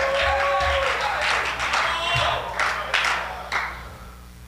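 A church congregation responds to the preacher with music, shouts and scattered claps. It dies away about three and a half seconds in.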